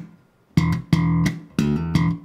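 Slapped electric bass guitar, an Enfield Lionheart, playing a short funk riff. After a brief silence, four notes with sharp, percussive attacks come about half a second in, each cut off cleanly by muting before the next.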